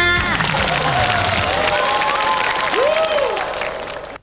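Audience applauding and cheering as a song ends. The last sung note and its backing music stop just after the start, leaving steady applause with a few voices calling out through it, easing slightly near the end.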